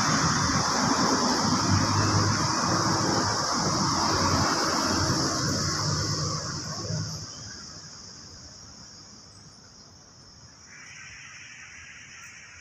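An engine runs with a low, uneven hum under a steady high-pitched buzz. Both fade away over the second half, leaving a faint, quieter background.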